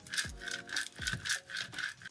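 A plastic Cricut scraper tool rubbed quickly back and forth over transfer tape laid on a vinyl decal, about seven short scraping strokes, burnishing the tape down so it will lift the decal off its backing. Background music plays under it.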